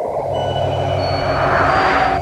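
A steady vehicle engine drone that cuts in suddenly, with a rushing noise swelling about a second and a half in.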